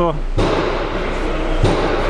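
A loud, steady mechanical rattle with hiss from a workshop power tool, starting about half a second in and shifting slightly near the end.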